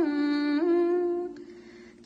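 A single voice singing in long, held notes, stepping down in pitch at the start and back up about half a second in, then fading out about one and a half seconds in.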